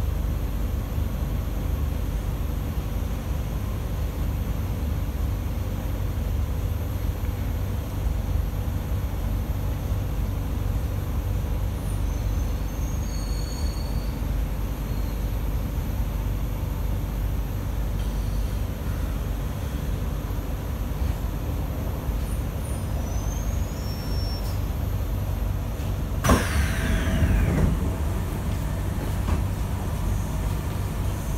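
Steady low rumble inside the carriage of an SMRT C151A Kawasaki–CSR Sifang electric train as it runs and pulls into a station. About 26 seconds in there is a sudden loud burst with a falling tone as the doors open.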